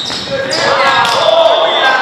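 Volleyball rally on a gym floor: the ball is struck and bounces, and players' voices call out mid-rally.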